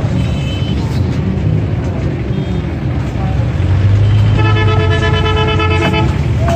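A vehicle horn sounding one steady, held note for about a second and a half near the end, over a constant low rumble.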